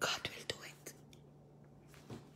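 A woman's brief whispered, breathy speech in the first half second, then a pause with only a faint low steady hum.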